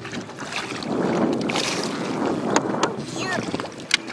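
Water splashing and rushing beside a boat as a hooked hybrid bass is pulled up to the surface, loudest in the first half, with several sharp knocks and a short voice sound near the end.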